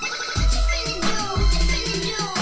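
Music with a deep bass beat, hitting about once a second, played through a JBL PartyBox 100 portable Bluetooth party speaker as a sound sample.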